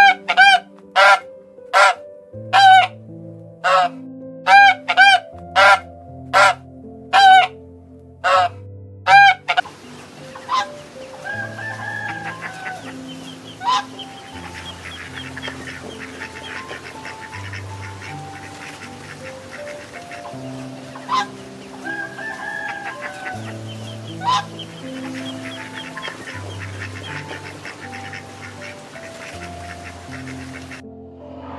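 A bird calls loudly about a dozen times in quick, even succession over the first ten seconds. After that comes a steady twittering of small birds with a few sharper single calls. Soft piano music plays throughout.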